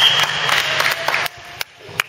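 Echoing sports-hall din during a dodgeball game: a steady wash of noise broken by a few sharp knocks of balls and feet. It drops away abruptly a little past halfway, leaving a couple of isolated knocks.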